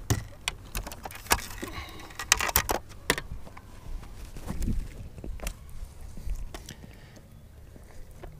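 Clatter of a freshly caught crappie and gear being handled on a boat deck and laid on a measuring board: a quick run of sharp clicks and knocks in the first three seconds, then scattered knocks that die away.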